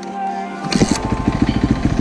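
Yamaha YZ450F single-cylinder four-stroke dirt-bike engine, converted to a snowbike, kick-started: it catches on the first kick about two-thirds of a second in, then runs at idle with rapid, even firing pulses.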